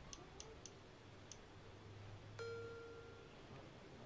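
Faint ticking of a spinning-wheel picker app played through a phone speaker: the clicks slow down as the wheel decelerates and stop a little over a second in. A short steady electronic tone follows a second later, lasting under a second.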